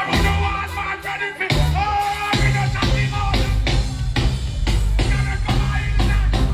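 A live dancehall band playing with a steady drum beat and heavy bass, under a held, wavering vocal line. The bass drops out briefly about a second in, then comes back.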